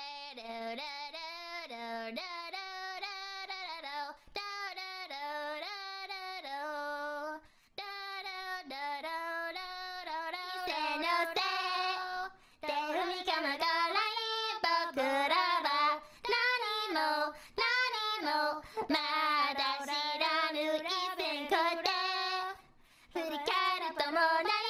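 A woman singing a melody solo, with wavering held notes and a few short breaks for breath.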